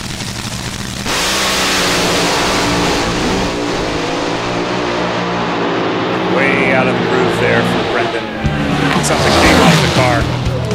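Two supercharged, nitro-burning front-engine Top Fuel dragsters idling on the line, then launching together about a second in and running at full throttle down the strip, very loud. One of them loses traction and spins its rear tire on the run.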